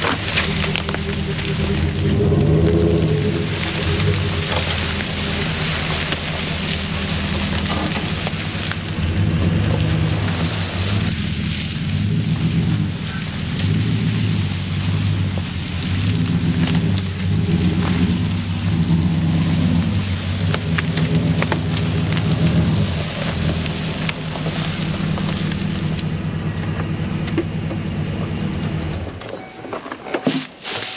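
Chevrolet Silverado 2500HD pickup's engine running as the truck drives slowly, its pitch rising and falling, while the tyres crackle over dry leaves and twigs. The engine noise stops about a second before the end.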